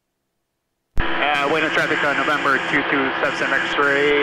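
Dead silence for about a second, then audio cuts in suddenly with a voice over the aircraft radio. It sounds thin and narrow, with a hiss above it.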